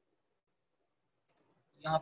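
Two quick, faint computer mouse clicks close together about a second and a quarter in, selecting a menu item, otherwise near silence; speech begins near the end.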